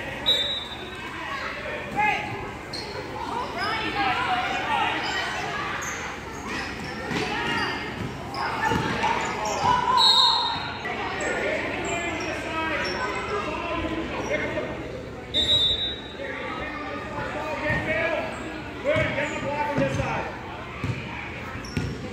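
Basketball bouncing on a gym floor during a youth game, over the chatter and calls of players and spectators, echoing in a large hall. A few short high squeaks come through.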